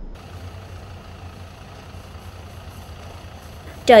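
Combine harvester engine running at a steady pitch, a constant machine hum with no changes in speed.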